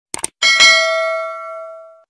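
Two quick mouse-click sound effects, then a bright notification-bell chime that rings and fades out over about a second and a half. These are the sounds of a YouTube subscribe-and-bell-icon animation.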